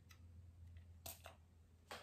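Near silence with three faint, light clicks, about a second in and near the end, from a small perfume bottle being handled in the hands.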